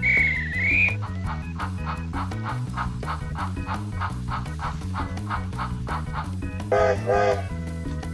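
Upbeat background music with a steady beat, opening with a short warbling whistle-like sound effect and broken near the end by two short loud pitched toots.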